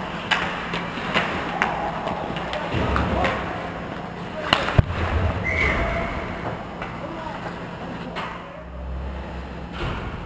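Ice hockey play: sticks and puck clattering and skates scraping the ice, with two sharp cracks about four and a half seconds in, over players' indistinct shouts.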